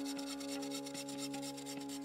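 Hand bow saw cutting through a wooden pole, a quick run of rasping strokes as the teeth bite into the wood. Background music with a steady held drone plays underneath.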